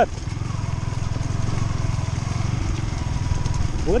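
Yamaha R15 V3's single-cylinder engine running steadily under the rider, a low, even pulsing with a faint whine above it.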